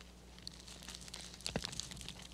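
Faint crinkling and rustling as hands handle a dead cat lying in grass and dry leaves, the fur tugged at where it sticks to the frozen ground, with a single click about one and a half seconds in. A low steady hum sits underneath.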